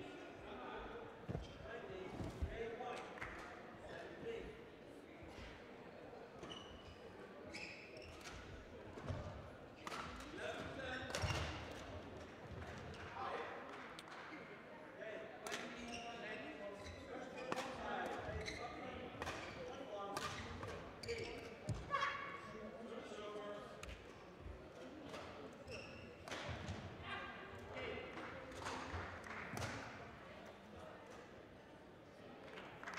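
Indistinct voices echoing in a large sports hall, with scattered sharp knocks and thuds from badminton play on a neighbouring court.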